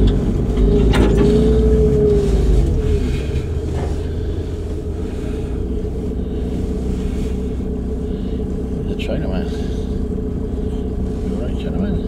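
Van engine and tyre noise heard from inside the cab while driving: a steady low drone that eases off slightly after the first few seconds.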